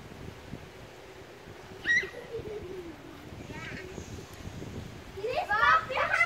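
A child's voice calling out loudly near the end, after a short sharp high chirp about two seconds in and a long low tone that falls in pitch.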